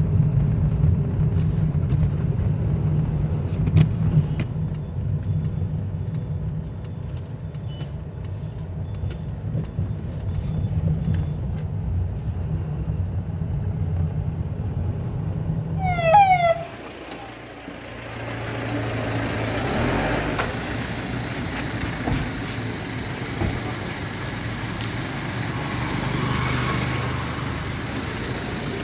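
Steady low engine and road rumble of a car driving, heard from inside the moving car. About sixteen seconds in it gives way to a few quick falling chirps, then to open street noise with traffic.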